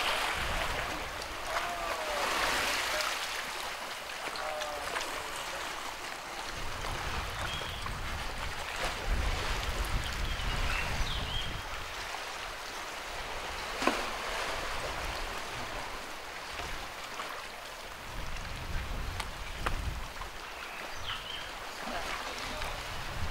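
Seaside ambience: sea water washing against a rocky shore in a steady wash, with gusts of wind rumbling on the microphone now and then.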